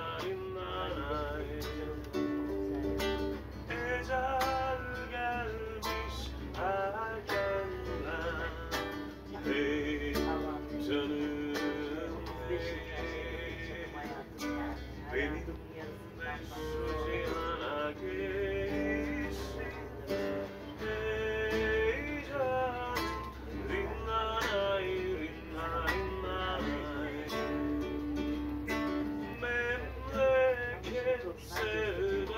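A man strumming an acoustic guitar and singing a song, live.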